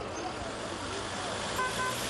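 Busy street traffic with a car horn giving two short toots near the end, and faint voices in the background.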